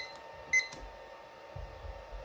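Digital kitchen timer beeping twice, short high beeps about half a second apart, as its buttons are pressed to set it to two minutes.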